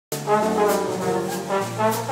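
Live jazz combo playing: trombone and saxophone on the melody over a drum kit, with regular cymbal strokes about three a second. The music cuts in abruptly mid-phrase.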